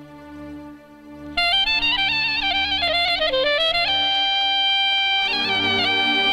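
Live wedding-band music. After a quieter opening, a loud, ornamented lead melody comes in about a second and a half in, holds one long note, then runs on over a steady accompaniment.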